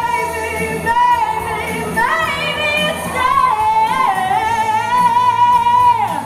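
Pop music with a woman's voice singing long, held high notes with vibrato over a band. A new phrase rises about two seconds in, and a long final note is held until it breaks off near the end.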